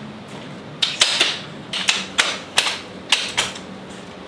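Aluminium telescoping ladder being extended, its sections clacking as they slide and lock: a quick run of about ten sharp clacks, starting about a second in and ending shortly before the end.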